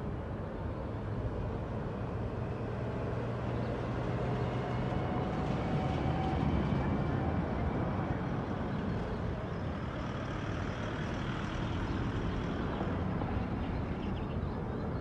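Street traffic ambience: a motor vehicle's engine running steadily nearby, a continuous low hum over general street noise.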